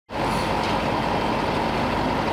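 A heavy construction machine's engine running steadily, with a steady high hum through it.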